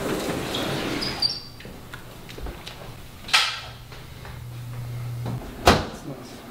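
Doors being handled: a sliding glass balcony door moving in its track, then a sharp knock near the end as a kitchen cabinet door shuts.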